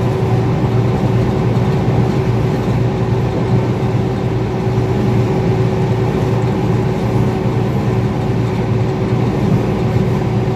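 Steady drone of engine and tyre noise heard from inside a vehicle's cabin while cruising on a concrete highway, with a faint steady hum running under it.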